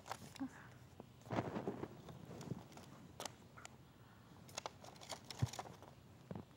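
Scissors snipping through folded paper: a few faint, scattered snips and clicks, with paper rustling as the sheet is handled.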